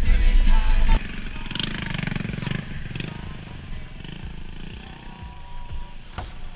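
Music with a heavy bass beat that cuts off about a second in, giving way to a small motor vehicle's engine running with a fast, even pulse, and street noise.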